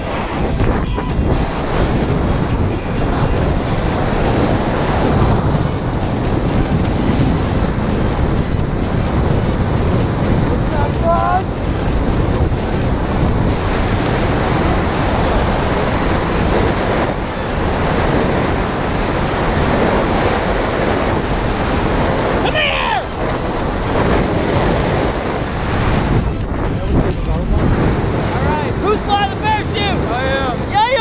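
Wind rushing over a camera microphone during a tandem parachute descent under canopy, a steady rush with no let-up.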